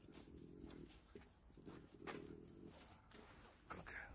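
Faint breathing and sniffing of a Chongqing dog as it walks on a leash with its nose to the ground, in two short stretches, with a few light clicks.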